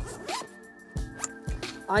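A zipper being pulled open on a fabric wader tote (Umpqua ZS2) as its lid is unzipped, a short rasp at the start followed by a few small clicks and rustles of the bag.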